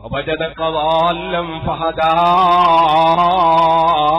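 A man's voice chanting in a melodic, sustained style during a religious sermon. After a few short broken syllables, he draws the words out into long held notes that waver slightly in pitch, and he grows louder about halfway through.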